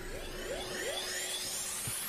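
Animated warp or teleport sound effect for a swirling space-time vortex: a sustained whoosh with several rising whistling sweeps and a steady tone underneath.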